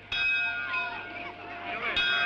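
A bell struck twice, about two seconds apart. Each stroke starts suddenly and rings on with several steady tones that slowly fade.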